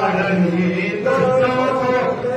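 Voices chanting mantras in long, held tones during a temple fire ritual.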